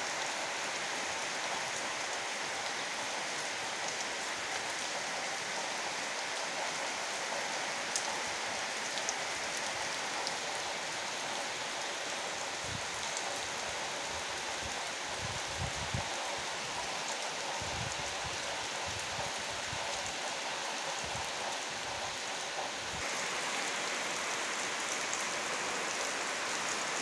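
Heavy rain falling steadily on trees, leaves and muddy ground, a dense even hiss. A few brief low rumbles come through around the middle.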